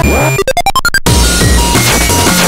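Breakcore / drum-and-bass electronic music: a dense mix with heavy synth bass. About half a second in it breaks into a quick glitchy stutter of short blips climbing in pitch, then the full beat cuts back in at about one second.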